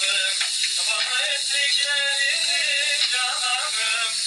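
Male voices singing a Turkish folk song (türkü), with long, wavering held notes, over a loud steady hiss.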